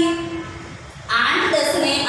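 Only speech: a woman reading out a multiplication table in long, drawn-out syllables, with a short pause about half a second in before she carries on.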